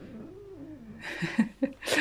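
A young tabby cat grumbling low and wavering in its throat while a hand strokes it, giving way to a breathy, noisy sound in the second half.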